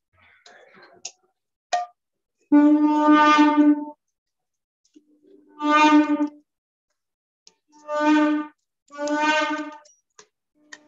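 Conch shell (shankha) blown in four steady, single-pitched blasts. The first is about a second and a half long and the loudest; the three after it are shorter, and some start softly before swelling. A few faint clicks and rustles come before the first blast.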